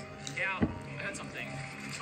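Voices and music playing quietly in the background, with a short bit of speech about half a second in over a steady musical bed.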